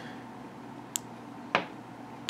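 Two short clicks from a Klarus 360X3 flashlight's tail-cap button being pressed by thumb, about half a second apart, over quiet room tone.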